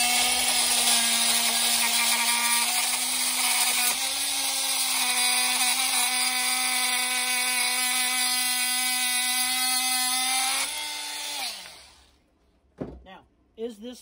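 Milwaukee cordless oscillating multi-tool cutting into a bolt clamped in a vise: a steady, loud buzzing hum. Near the end the pitch rises slightly, then the tool winds down and stops about two seconds before the end.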